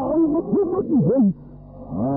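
A man's voice orating emphatically, syllables drawn out with swooping rising and falling pitch, on a muffled old tape recording with no treble. About a second and a half in, the voice pauses and a low steady hum is left.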